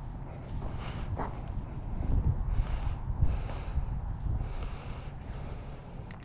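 Wind buffeting the microphone, an uneven low rumble, with a few faint clicks and rustles over it.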